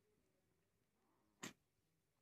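Near silence with a single brief click about one and a half seconds in.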